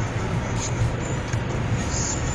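Steady road noise inside a Seat Cordoba's cabin at highway speed in heavy rain: tyres hissing on the wet road over a low drone.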